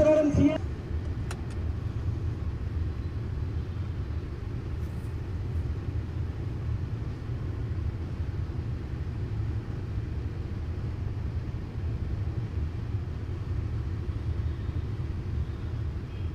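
Steady low rumble of slow-moving city road traffic, with engines of cars and motorbikes running close by.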